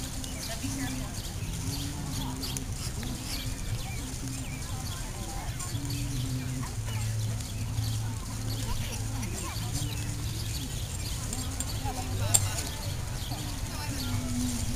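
Indistinct voices of people talking over steady background noise, with a sharp click near the end.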